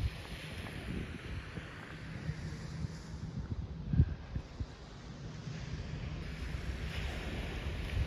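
Wind buffeting the microphone in a steady low rumble, with a soft wash of small waves on the beach. There is a single thump about four seconds in.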